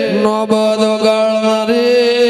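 Devotional dhun chanted by a man into a microphone: long held notes that step to a new pitch near the start and again late on, over a steady sustained drone, with a few sharp knocks.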